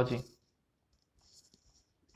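The end of a man's spoken word, then a pause holding only a few faint clicks about halfway through.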